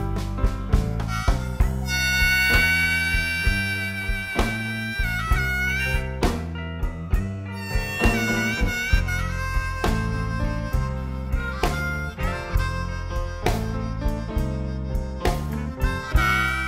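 Blues harmonica solo, with long held notes that bend and waver, over the band's steady beat.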